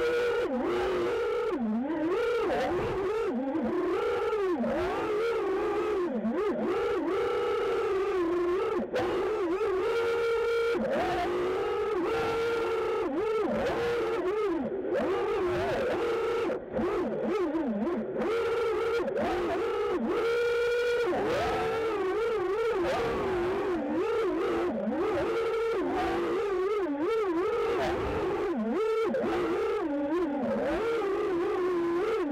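FPV racing quadcopter's brushless motors whining, their pitch sliding up and down continually with throttle through the turns, heard close from the onboard camera.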